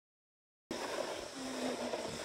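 Starts silent, then about a third of the way in a steady rushing noise begins: wind over a phone microphone and snow sliding underfoot while riding down a ski slope.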